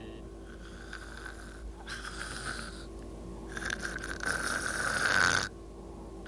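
A man snoring in a cartoon soundtrack, asleep drunk: two long snores, the first about two seconds in and a longer, louder one from about three and a half seconds.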